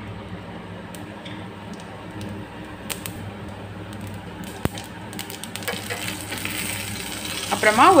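Fennel seeds frying in hot coconut oil in a stainless steel pan: a soft sizzle that grows brighter over the last few seconds, with a couple of sharp clicks, over a steady low hum.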